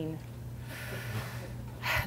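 A woman's short audible in-breath through the mouth, under a second long, in a pause in her talk, over a steady low room hum.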